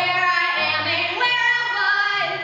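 A young female voice singing a musical-theatre solo into a microphone, holding and sliding between notes, over low accompaniment notes.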